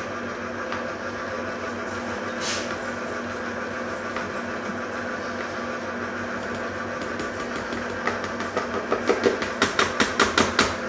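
Electric stand mixer running at low speed with a dough hook, its motor humming steadily while flour goes into the bowl. Near the end comes a quick series of sharp knocks.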